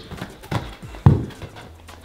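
A ball bounced by hand, giving two dull thuds about half a second apart, the second the louder, about a second in.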